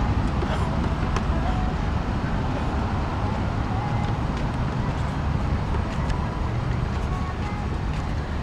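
Steady city street noise at night: a low rumble of passing road traffic with indistinct voices of people nearby.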